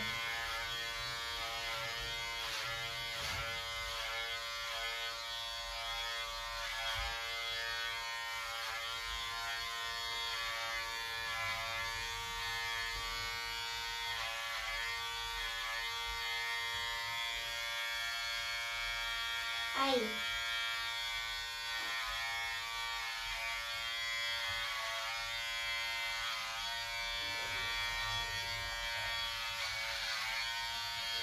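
Electric hair clippers running steadily through a child's haircut, one even electric hum with an unchanging pitch.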